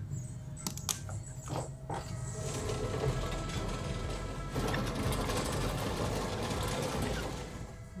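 A TV episode's soundtrack: music under a steady, fast mechanical rattle and whir, with a few sharp clicks in the first two seconds.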